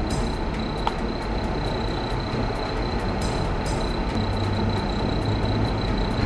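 Steady outdoor traffic rumble and hiss, with a constant thin high whine over it.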